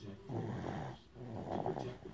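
Sleeping baby snoring: two snoring breaths of under a second each, with a short pause between them.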